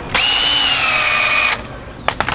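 Power drill driving a screw into a wooden board, running for about a second and a half in one steady whine that sags slightly in pitch as the screw bites, then stopping suddenly.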